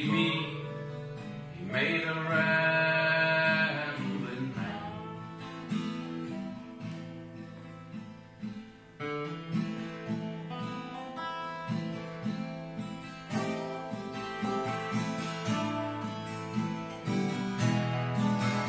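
Acoustic guitar and dobro playing a minor-key country song. A sung line ends on a held note in the first few seconds, then the dobro plays an instrumental break of slide lines over the strummed guitar.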